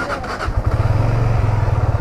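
Benelli motorcycle engine catching about half a second in and settling into a steady, fast-pulsing idle.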